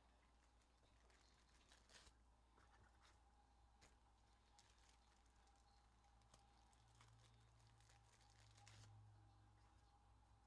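Near silence: room tone with a few faint scattered clicks.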